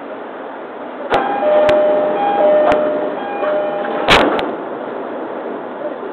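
E231-series commuter train's door-closing chime, a two-note chime repeated a few times with clicks of the door gear, then the doors shutting with a heavy double thump about four seconds in.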